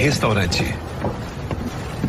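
A person's voice, brief and without clear words, in the first second, then outdoor background sound.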